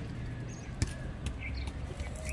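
Outdoor background: a steady low hum with faint chirps of small birds, broken by one sharp click a little under a second in.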